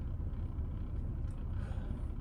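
Low, steady rumble of a car heard from inside its cabin, as from the engine idling.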